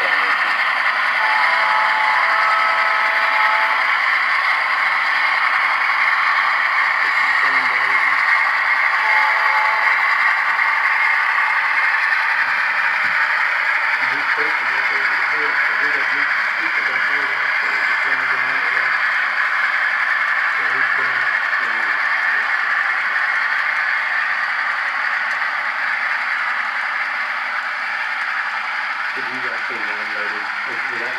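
A steady hiss with faint, indistinct voices talking in the background.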